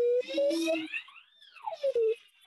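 A child's drawn-out wordless voice over a video call, like a long 'hmm' while thinking. Its pitch creeps up slowly, then swoops high and falls back down near the end.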